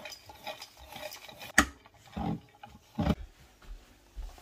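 Kitchen handling sounds: crockery and utensils being moved and knocked on a worktop while coffee is made. The loudest is a sharp clack about one and a half seconds in, followed by two duller knocks and a few light ticks.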